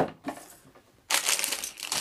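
Plastic LEGO parts bags crinkling as they are handled, starting about a second in, after a single sharp knock at the start.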